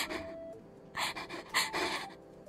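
A young woman laughing breathily into a close microphone, mostly air with little voice: a sharp gasp at the start, then two wheezing bursts of laughter about a second and a second and a half in.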